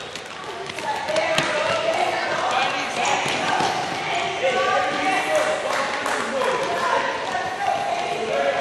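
Basketballs bouncing, several separate bounces, among overlapping voices talking.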